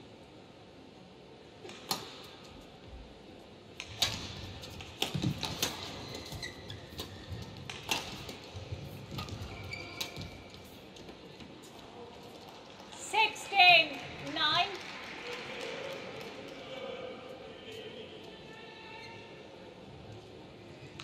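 Badminton rally: a series of sharp hits of racket on shuttlecock, then, about two-thirds through, a loud burst of quick, wavering squeaks from shoes skidding on the court mat.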